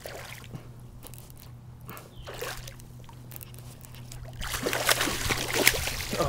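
A hooked pickerel thrashing and splashing at the water's surface. It starts about four and a half seconds in and is the loudest sound, following a quieter stretch of light water noise and a few small clicks.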